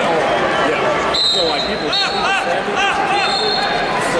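Referee's whistle blown about a second in to start the wrestling, over the steady noise of a large arena crowd, followed by a run of short squeaks from wrestling shoes on the mat as the wrestlers tie up.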